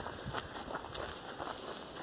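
Faint footsteps on dry, bare dirt: a few soft, irregular steps over a quiet outdoor background.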